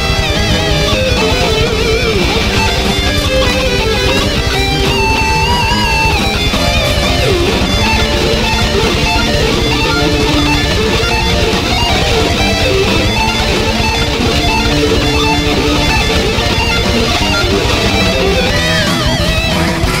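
A heavy metal song played on a distorted electric guitar run through Guitar Rig 5 amp-simulation software, with fast picked riffs. About five seconds in, a few high notes are held with vibrato.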